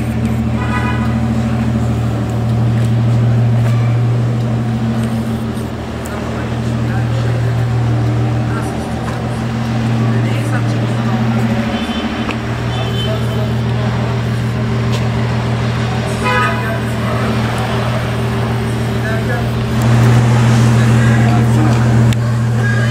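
Modified Fiat 126 Bis's small two-cylinder engine running at a steady idle, a low even hum that gets a little louder near the end.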